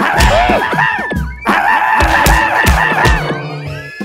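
Cartoon soundtrack of music and slapstick sound effects: a few thuds in the first second, then a loud held passage in the middle that fades near the end.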